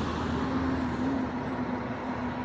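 A large emergency vehicle's engine running as it goes by on the street: a steady low hum over traffic noise, with no siren sounding.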